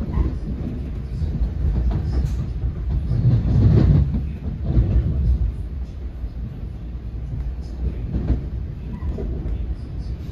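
Running noise heard inside a moving NJ Transit commuter train car: a steady rumble of wheels on rails with occasional clicks. It swells to its loudest about four seconds in and eases off after.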